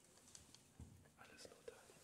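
Near silence, with a faint whispered voice and a few small ticks and rustles.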